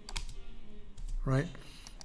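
A few sharp clicks of computer input, two close together near the start and another about a second in, with a man briefly saying "right?".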